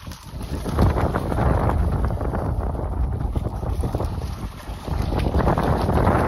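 Wind buffeting the microphone in a loud, low rumble that eases briefly and picks up again near the end, mixed with the splashing of a dog running through shallow water at the shoreline.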